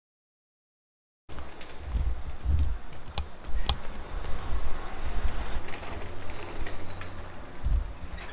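Silence for about the first second, then wind buffeting the microphone outdoors: a low, gusting rumble with a few sharp clicks.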